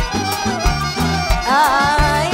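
Live band playing upbeat pop with drum kit and hand percussion keeping a steady beat, under a woman singing into a microphone; a quick wavering melodic run comes about one and a half seconds in.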